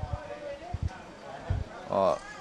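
Faint background voices in a pause between questions and answers, with a few short low thumps. A man's voice says "oh" at the very end.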